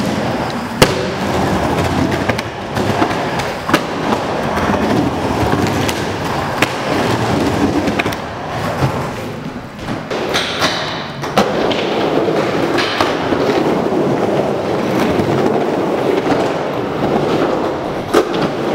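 Skateboard wheels rolling around a wooden bowl in a continuous rumble, broken by sharp clacks of the board hitting the surface, the loudest about a second in. Around ten seconds in a higher scrape runs for about a second and a half.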